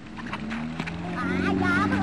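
Motorboat engine getting louder over the first second and a half, then running steadily, as it pulls a water-skier up out of the water. Voices call out over it.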